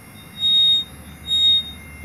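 Warning alarm of a Genie TZ-34/20 battery-powered spider boom lift beeping: two high-pitched beeps about a second apart.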